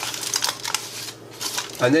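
Aluminium foil crinkling as it is pressed and crimped by hand around the rim of a paper cup, dying away after about a second.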